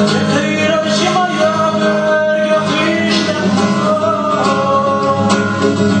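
A Chechen song: singing with guitar accompaniment, the music steady and continuous.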